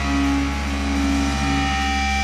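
Hardcore punk recording: a held, distorted electric guitar chord ringing on steadily over a low hum, with no drums or vocals.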